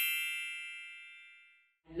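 A bright, bell-like chime sound effect for a title card, ringing and fading away over about a second.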